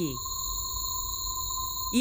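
Electronic space-themed ambient drone: a few steady high tones held over a deep low rumble.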